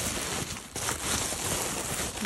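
Tissue paper rustling and crinkling as a package is unwrapped by hand.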